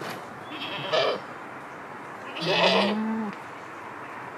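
Alpine goat bleating once, a call lasting under a second about two and a half seconds in, with a shorter sound about a second in.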